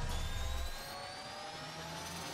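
Synthesized riser sound effect in an intro: several tones glide slowly upward over a whooshing noise. A deep low rumble underneath fades out under a second in.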